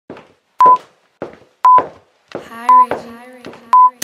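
Electronic workout-timer beeps: a short steady tone about once a second, four in all, each after a faint click, counting down the interval. A voice joins about halfway in.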